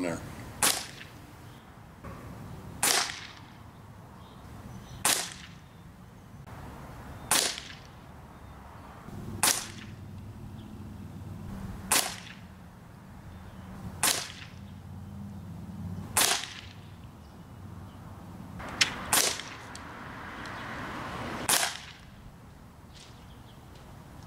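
A .177 Gamo Swarm Maxxim break-barrel pellet rifle firing a string of about ten shots, one every two seconds or so, each a sharp crack. Two of the shots come close together near the end.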